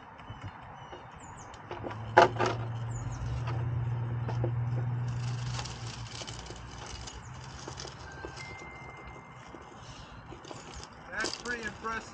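Axial SCX10 Pro RC rock crawler climbing a rock: a sharp knock against the rock about two seconds in, then its electric motor and gears humming under load for a few seconds. The hum fades once the truck is over the top.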